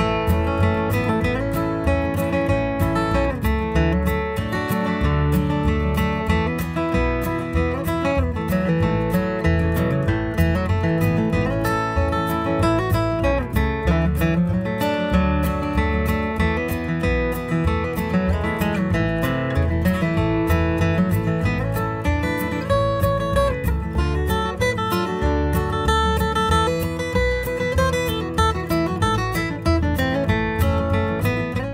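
Capoed steel-string acoustic guitar flatpicked: a bluegrass melody in the key of A played from G-position shapes, a steady run of picked single notes mixed with strums.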